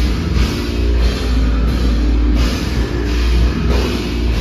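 A heavy rock band playing live at high volume: a drum kit with recurring cymbal crashes over a booming, heavy low end.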